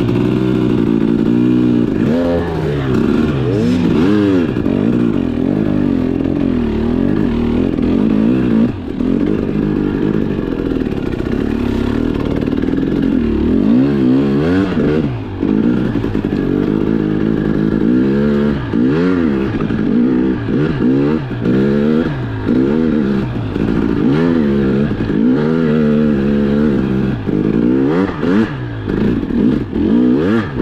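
KTM 300 XC-W TPI two-stroke single-cylinder dirt bike engine revving up and down over and over as the throttle is opened and shut, its pitch rising and falling every second or two.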